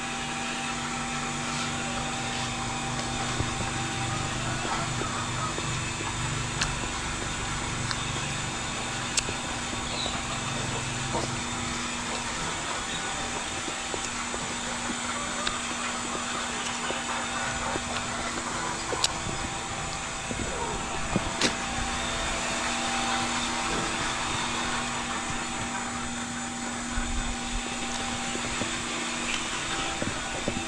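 A steady mechanical hum over an even hiss, with a few faint clicks and taps scattered through it.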